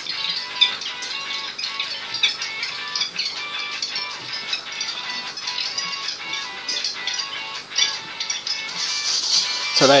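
Video clip played back through laptop speakers at about eight times normal speed: its sound is sped up into a fast, high-pitched jumble of short fragments.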